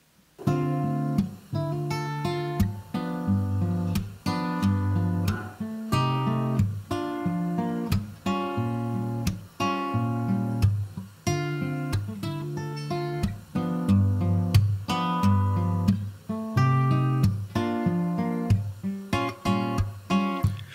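Solo acoustic guitar playing a repeating pattern of chords, starting about half a second in.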